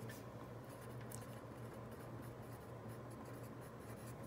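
Ballpoint pen writing on lined notebook paper: faint, short scratching strokes over a low steady hum.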